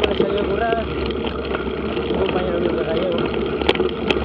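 Mountain bike rolling over a dirt track: steady tyre and riding noise with sharp rattling clicks from bumps, the loudest a little before the end.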